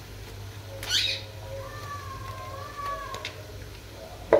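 A wet, long-haired pet being bathed whines in one long, wavering high call, just after a short splashy rush of water or scrubbing about a second in.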